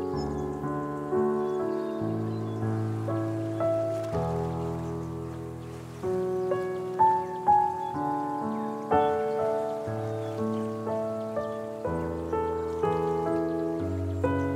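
Solo piano playing a slow, gentle instrumental piece: held bass notes under soft chords that change every two seconds or so, with a few brighter, louder notes about halfway through.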